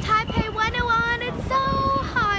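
A young girl singing a short melody, with gliding notes settling into a held, steady note near the end.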